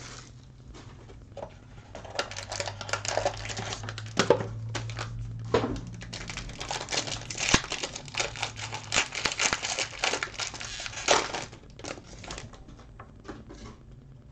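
A sealed Chronology Hockey card pack's wrapper crinkling and tearing as it is opened by hand, a dense crackle lasting about ten seconds. Near the end it gives way to fainter clicks of cards being handled.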